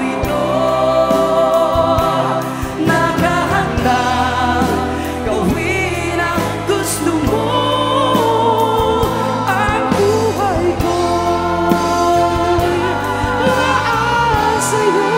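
Male vocalist singing a Tagalog praise song live into a microphone, backed by a band.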